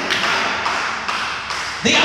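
A man preaching into a handheld microphone, his voice carried over a hall's loudspeakers and sounding harsh and echoing.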